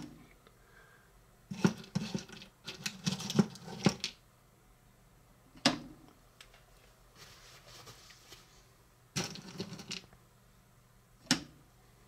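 Reese's Pieces candies clicking and rattling as fingers pick them out of a small bowl and set them onto a frosted cookie: a few short clusters of light clicks, with single sharp taps between.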